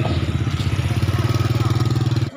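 Motorcycle engine running close by, a steady low note with an even pulse.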